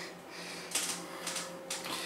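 Traction elevator car in motion: a faint, steady low hum with a few soft rattles, and a faint higher tone coming in about halfway.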